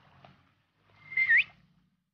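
A short high whistle, about half a second long, held on one note, then dipping and sweeping sharply upward, over a faint low background hum.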